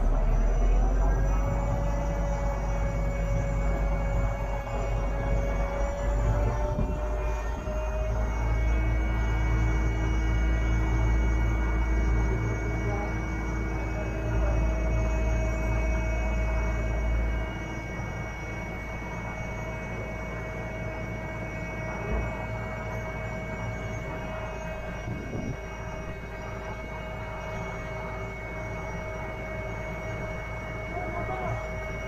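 Liebherr LTM 1230-5.1 mobile crane's engine and hydraulics running with a low rumble and steady whining tones. It is louder for the first seventeen seconds or so, the whine rising slightly in pitch about seven seconds in, then settles to a lower, even level.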